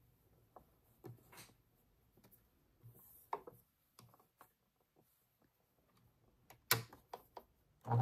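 Soft fabric rustling and scattered small clicks and knocks as cotton patchwork pieces are handled and positioned under a sewing machine's presser foot, with one sharper knock near the end. The sewing machine starts running right at the very end.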